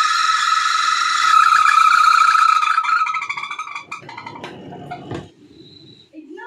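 Spin tub of a Singer Maxiclean semi-automatic washing machine squealing loudly at a steady high pitch. It dies away after about three seconds, followed by a few knocks. The repairer traces this squeal during spin to a worn buffer bush rubbing.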